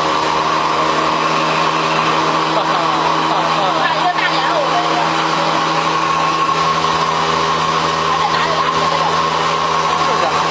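A motor-driven machine running with a steady, unchanging hum.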